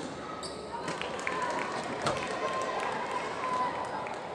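Badminton rally: sharp racket hits on the shuttlecock about a second apart, and shoes squeaking on the court floor as the players move and lunge.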